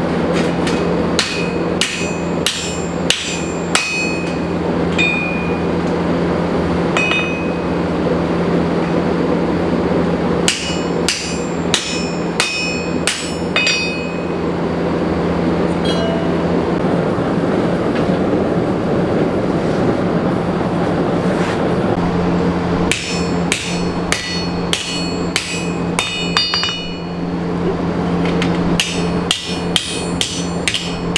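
Blacksmith's hammer striking red-hot steel plate on an anvil in runs of quick ringing blows, with pauses between the runs. A gas forge burner runs with a steady low roar underneath.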